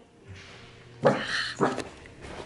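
A woman's stifled, breathy laughter behind her hand: two short bursts, the first about a second in and the second about half a second later.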